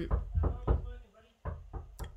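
A run of dull knocks and thumps: four in the first second, then two softer ones about a second and a half in.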